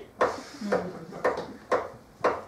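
A rhythmic clanging beat, short sharp strokes repeating about twice a second.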